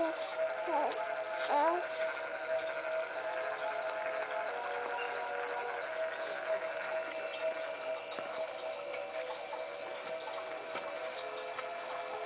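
A musical baby mobile with hanging plush fish plays its tune in steady held tones. A baby coos a few times near the start.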